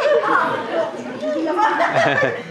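Speech: actors' voices in stage dialogue.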